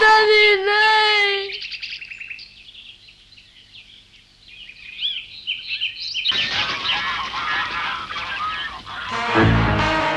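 A long held note fades out in the first second and a half, then birds chirp in a cartoon soundtrack. Music comes back in about six seconds in, with a low boom near the end.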